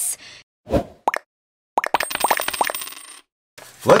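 Two short swishes, then a quick run of ringing clicks lasting over a second, like a coin spinning down on a hard surface.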